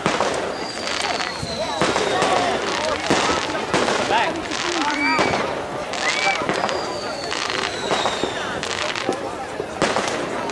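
Fireworks going off in quick succession: a continuous run of bangs and crackles.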